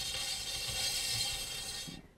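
A paint-pouring spinner turntable whirring steadily as it spins a round canvas, dying away near the end as the spin stops.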